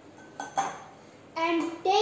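Glass bottles or a measuring jug clinking sharply on a glass tabletop, two knocks about half a second in, the second the louder. A boy's voice starts speaking about a second and a half in.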